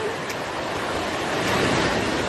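Sea waves washing onto the shore, with wind on the microphone; the wash swells louder near the end.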